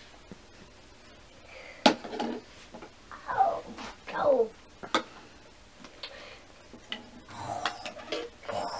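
A few sharp clicks of plastic toy tea-set pieces being handled, the loudest about two seconds in. In between come two short falling-pitch vocal sounds from a child.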